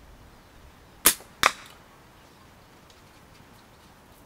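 A Simpleshot Scout LT slingshot with tapered flat bands is shot: a sharp snap as the bands are released about a second in, then, under half a second later, a second crack with a brief ring as the 8 mm steel ball hits the target.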